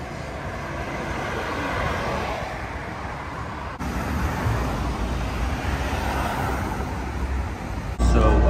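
City street traffic: cars driving past with a steady rumble of tyres and engines. The sound changes abruptly a little under four seconds in and grows louder, with more low rumble.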